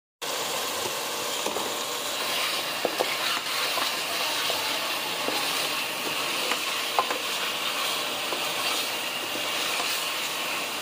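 Beef bhuna gosht frying in oil in an aluminium pot, with a steady sizzle, while a spatula stirs and scrapes through it with scattered light clicks against the pot.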